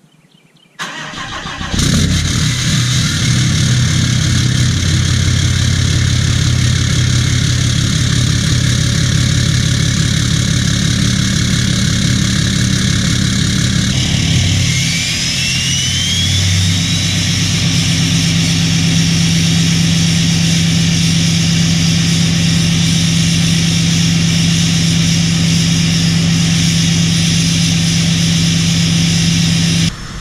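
2017 Ram 2500's 6.7 Cummins inline-six turbo-diesel with a 5-inch straight-pipe exhaust (DPF delete) cold-starting at about 32 °F: a moment of cranking, then it catches and idles loudly. About halfway through the idle note shifts and a brief rising whistle sounds, then the idle holds steady.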